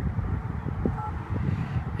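Wind rumbling on the microphone, with a couple of faint clicks in the middle.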